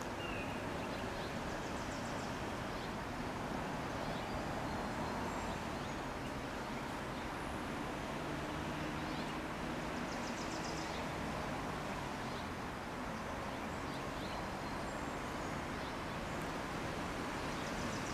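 Steady outdoor background hiss and hum, with a few faint high chirps of small birds, a couple of seconds in and again near the middle.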